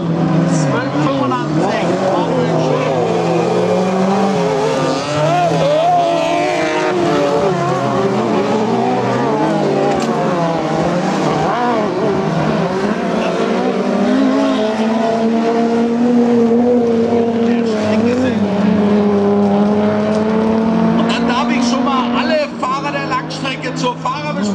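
Several autocross cars racing on a dirt track, their engines rising and falling in pitch as they accelerate and shift, several engines heard at once.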